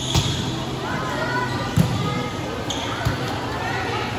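Volleyball struck by hand: a sharp slap as it is served just after the start, then a louder hit about two seconds in and a couple of lighter hits as the rally is played. High voices call out between the hits.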